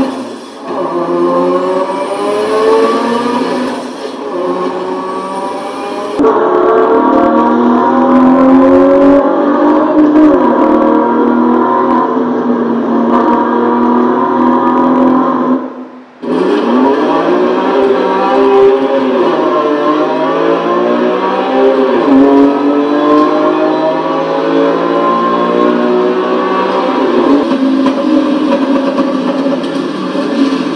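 Small loudspeaker playing a video's soundtrack: loud, continuous pitched sound whose tones slide up and down, cutting out briefly about sixteen seconds in.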